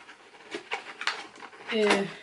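Faint handling noise of small ornaments being unpacked: light clicks and rustles, with a short vocal sound near the end.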